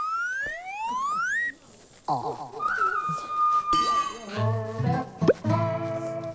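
Comic cartoon-style sound effects: a rising whistle-like glide, then a falling glide and a held whistle tone. Upbeat music with a plucked-string beat comes in about four seconds in.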